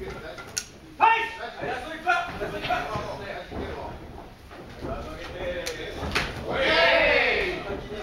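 Shouting voices of spectators and corners at an amateur boxing bout, with one long loud shout near the end, and a few sharp knocks.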